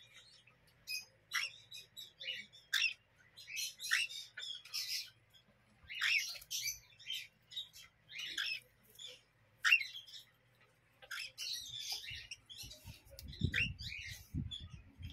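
Young pet parrots, cockatiel chicks among them, giving short high chirps and squawks in irregular, scattered bursts. Near the end there is some low rumbling.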